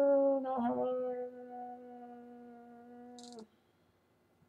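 A woman humming a long, level 'hmm' with her mouth closed, stepping down slightly in pitch about half a second in and fading out about three and a half seconds in.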